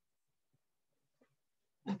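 Near silence: room tone with a few very faint short sounds, then a woman's voice starts just before the end.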